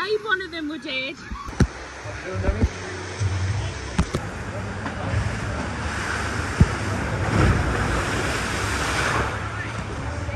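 Waterslide water rushing and splashing, swelling about seven seconds in and easing near the end as a rider comes down into the run-out trough.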